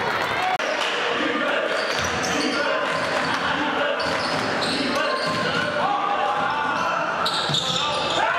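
Live sound of a basketball game in a gym: spectators' voices and shouts, sneakers squeaking and a ball bouncing on the hardwood court, echoing in the hall.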